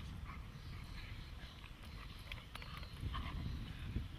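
Dog breathing hard and making short mouthing sounds as it grabs and tugs a ball-on-a-cord toy, in irregular short bursts, over a low rumble of wind on the microphone.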